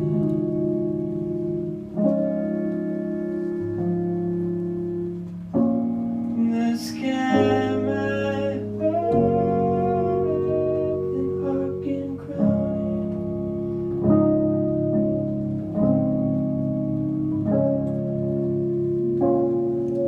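Slow live indie-folk band passage, mostly without words: sustained keyboard chords changing about every two seconds, with a gliding note held over them near the middle.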